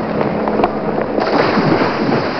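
Water splashing and churning continuously, with a crackling, spattering texture, as of people thrashing about in a pond.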